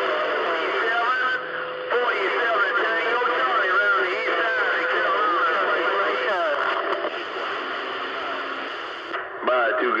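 CB radio receiving distant skip on channel 28: several stations' voices talking over one another, garbled and thin through the radio's speaker, with a steady tone under them for the first six seconds or so.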